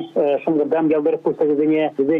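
A man speaking Russian over a telephone line, his voice thin and narrow.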